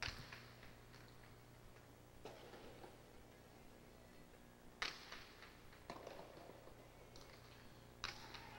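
Faint, echoing knocks of a jai alai pelota striking the fronton walls and cesta during a rally, a handful of hits a second or two apart, over a low steady hum.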